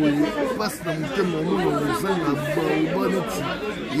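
Only speech: a man talking steadily, with no other sound standing out.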